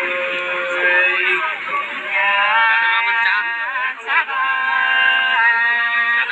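Women singing sli, the unaccompanied two-part folk song of the Nùng people of Lạng Sơn, in long held notes with wavering ornaments. There is a short break between phrases about four seconds in.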